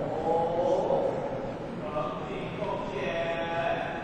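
Voices chanting in drawn-out, wavering tones, with a steady tape hiss underneath.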